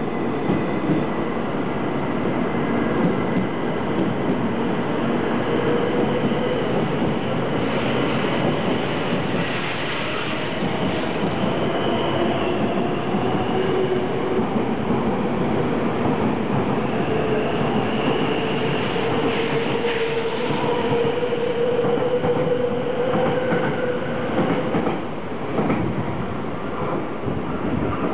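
A JR 700 series Shinkansen train pulls out of the station and accelerates past at close range. It makes a steady running noise from the wheels and car bodies, with a faint motor whine that rises slowly in pitch as it gathers speed.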